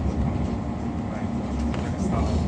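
Class 345 electric multiple-unit train running through a tunnel, heard from inside the carriage: a steady low rumble of wheels on rails.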